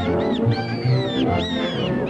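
Orchestral cartoon score, with a run of high squeaks that glide up and down over it, voicing the cartoon squirrels.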